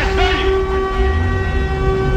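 Deathcore song intro: a steady droning chord of several held tones over a deep rumble, loud and sustained like a horn.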